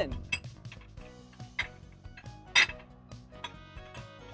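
Thick coloured glass rods clinking against one another as they are rolled and tapped by hand on a steel worktable, a few light clinks with two sharper ones about one and a half and two and a half seconds in.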